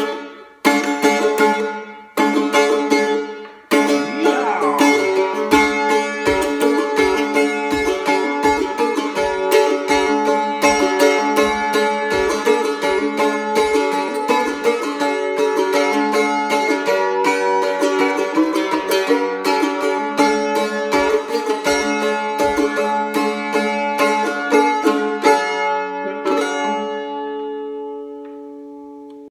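F-style mandolin playing an instrumental break: a few strummed chords that ring and die away, then fast picked runs, ending on a chord left to ring out and fade. Low thumps keep time about twice a second through the middle.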